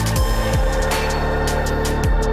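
Background electronic music with a steady beat and deep bass notes that slide down in pitch.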